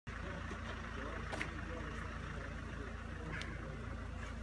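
Steady low outdoor rumble, with two brief clicks about two seconds apart.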